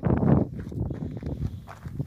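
Footsteps crunching on gravel, loudest in the first half-second, then fainter.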